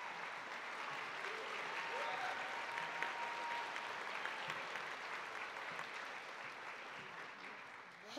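Audience applauding an award winner, steady for several seconds and tapering off toward the end.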